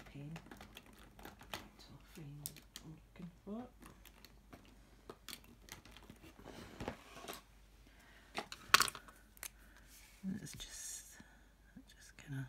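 Scattered light clicks and taps of a fine liner pen and small craft items being handled on a cutting mat, with one sharper click about nine seconds in.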